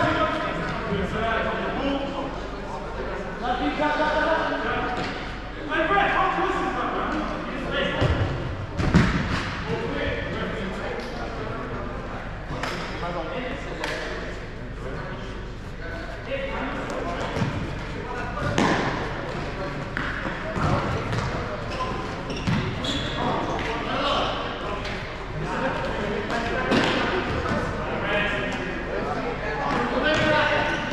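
A futsal ball being kicked and bouncing on a hard sports-hall floor, with players shouting and calling across the echoing hall. One loud thud about nine seconds in stands out among the scattered knocks.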